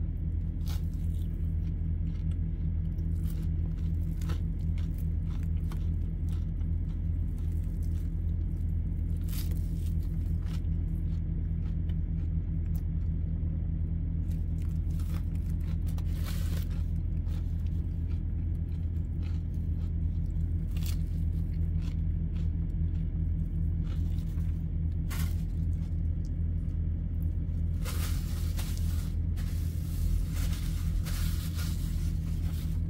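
Steady low machine hum, like a running engine or motor, holding one even level throughout. A few brief clicks and rustles of food and paper being handled sound over it.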